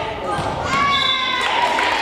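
Volleyball rally in a gym: high-pitched shouts and calls from the girl players and bench, held for about half a second each, with a sharp hit of the ball near the end.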